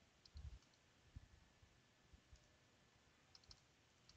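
Near silence with a few faint computer mouse clicks, one near the start and a couple near the end.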